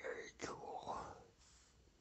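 A man's faint whispered, breathy mouth sounds and exhaling, with one short click about half a second in, trailing off into room tone after about a second.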